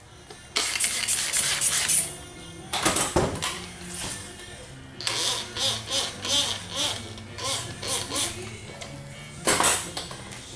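Hand trigger spray bottle squirting fluid onto paint protection film on a headlamp, in hissing bursts: a quick run of squirts about half a second in, another near three seconds and one just before the end. Background music plays underneath.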